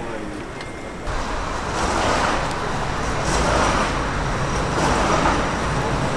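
Murmur of a waiting crowd, then from about a second in a steady noise of road traffic that swells a few times as vehicles pass.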